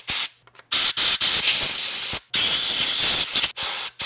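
Compressed air hissing from a handheld blow gun pressed against a Honda GX-style carburetor, blowing it dry and clearing its small passages after ultrasonic cleaning. There is a short burst first, then two longer blasts of about a second and a half each with a brief break between.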